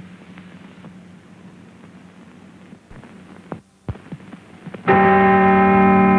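Faint hum and film-soundtrack noise with a few soft clicks, then about five seconds in a loud, steady signal tone starts abruptly. It is a buzzer-like sound with several held pitches, and it is the cue that calls the pilot away.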